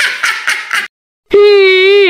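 Meme voice sound effects: a short, choppy snickering laugh, then after a brief pause a loud, long, steady crying wail.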